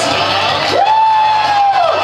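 A single long whoop from a voice in the crowd, rising sharply about two-thirds of a second in, held for about a second, and trailing off near the end, over general crowd noise.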